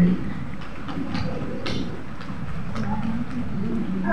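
Airport terminal background noise: a steady low rumble with a few faint clicks and knocks.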